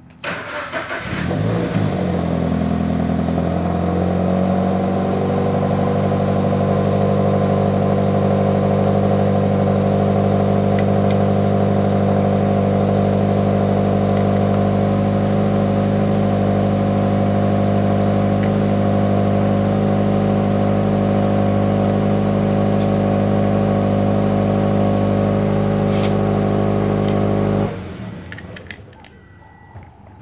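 2013 Toyota GT86's 2.0-litre flat-four boxer engine cold-starting through an exhaust with the mid-pipe catalytic converter removed. It cranks briefly and catches, flares up and settles over a few seconds into a loud, steady idle, then cuts off abruptly near the end.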